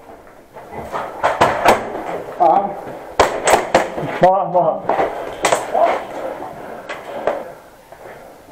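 Airsoft gas-pistol fire: sharp cracks, single and in quick pairs and triples, with BB hits, mixed with players' short shouts.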